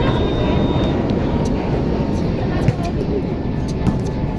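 Steady low rumble with faint voices in the background, broken twice by a short sharp smack, the second near the end, typical of a hand striking a volleyball in play.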